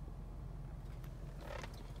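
Steady low hum of a 2008 Cadillac DTS's Northstar V8 idling, heard from inside the cabin.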